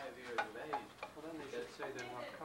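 Serving spoons scraping and clinking against pots and dishes as food is dished out, with a few sharp clinks, over faint talk.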